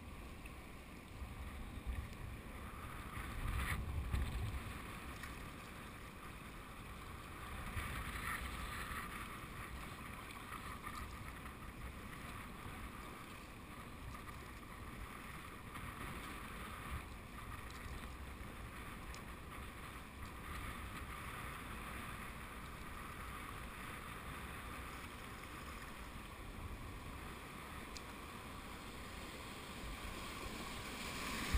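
Steady rush of river water around a kayak on a river running high at about 4000 cfs, with wind rumbling on the microphone a few seconds in.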